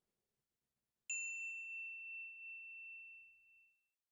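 A single high, bell-like ding, struck once about a second in, that rings out and fades away over about two and a half seconds.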